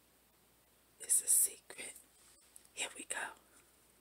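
A woman whispering a few words in two short breathy bursts, about a second in and again near three seconds.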